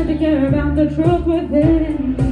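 A woman singing a pop song live into a handheld microphone over backing music with a steady beat of about two strokes a second.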